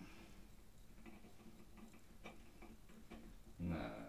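Faint, irregular light clicks and taps of small parts being handled during assembly, over a steady low hum. A short spoken word comes near the end.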